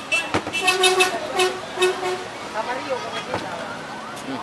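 A vehicle horn sounding a quick series of short, flat toots about a second in, over street noise. A sharp click comes just before the toots, and another near the end.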